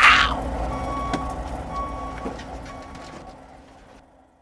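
Truck backing up: its reversing alarm beeps about every three-quarters of a second over a low engine rumble. It opens with a short hiss and fades away.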